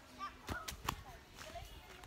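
A quick run of three sharp clicks, the last and loudest about a second in.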